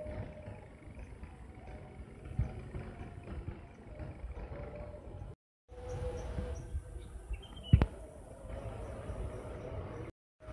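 Outdoor ambience: a steady low rumble with a faint engine hum, broken by a moment of dead silence about halfway through, and a single sharp knock near the end.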